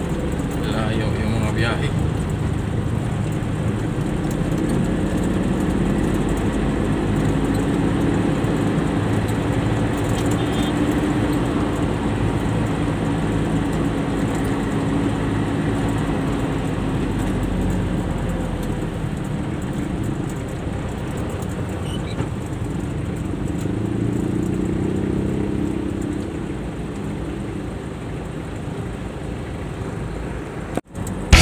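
Cargo truck's engine heard from inside the cab while driving, a steady low drone whose pitch slowly rises and falls as the truck speeds up and eases off in traffic.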